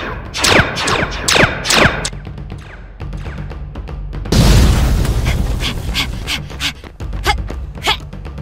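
Cartoon laser-gun sound effects: several quick zaps in the first two seconds, each falling in pitch, over background music. About four seconds in comes a loud burst of noise, and the music carries on with a beat.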